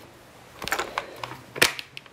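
A few short, sharp clicks and taps, the loudest about one and a half seconds in, from small hard objects being handled up close.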